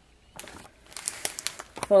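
Clear plastic treat bag crinkling in a few irregular rustles as a hand gathers and folds its top.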